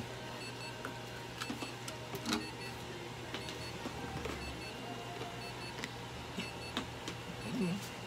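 A steady electrical hum with short, high electronic beeps repeating about once a second, and a few light clicks and rustles of handling.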